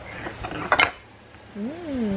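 Two sharp clicks of tableware about a second in, then a closed-mouth 'mmm' hum from a woman chewing fruit, rising and then falling in pitch near the end.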